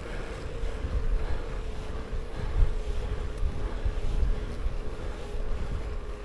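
Wind buffeting the action camera's microphone as a road bike is ridden uphill: an uneven low rumble in gusts, with a faint steady whine underneath.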